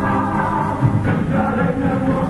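J-pop song playing, with sung vocals held over a full band backing.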